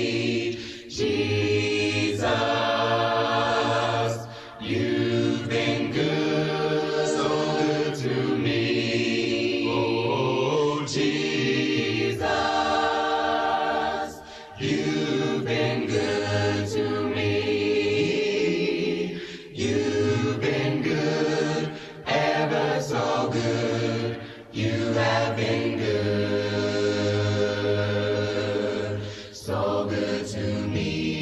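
A choir singing a hymn a cappella, several voices in harmony, in long held phrases with short breaks between them.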